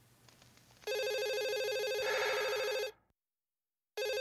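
Office desk telephone ringing: a steady electronic ring comes in about a second in, holds for about two seconds and cuts off, then rings again at the very end.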